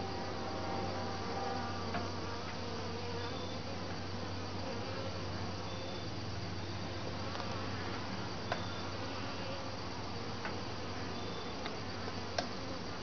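Honeybees buzzing steadily around an open top-bar hive, with a few light wooden knocks as the top bars are set back in place.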